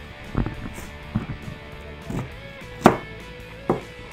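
A kitchen knife chopping through a sweet potato, about five sharp knocks of the blade going through onto the table, the loudest a little before three seconds in. A faint music bed lies underneath.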